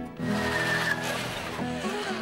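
Electric drill boring a hole through a model railway layout board at a turnout position: a steady grinding noise starting just after the beginning, with a high whine that sinks slightly about halfway through. Soft guitar music plays underneath.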